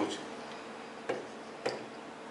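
Stylus tapping and scratching on an interactive display's screen while marking an angle and writing a letter: a few light, separate taps, clearest about a second in and again a little later, over faint room hiss.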